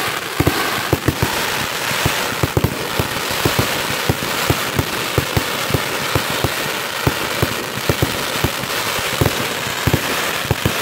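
Professional fireworks going off at close range from the launch site: an unbroken, irregular run of sharp bangs and pops, several a second, over a dense crackling hiss.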